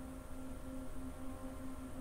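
Quiet room tone with a faint, steady low hum.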